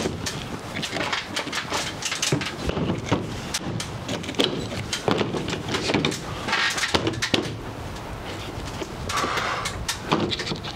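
A vinyl soffit panel being slid and pushed into place overhead by hand. Irregular clicks and knocks of the plastic, with a few longer scraping stretches as it slides along the channel.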